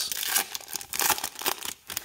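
Foil wrapper of a baseball card pack torn open and crinkled by hand, in irregular rips and crinkles that drop away briefly near the end.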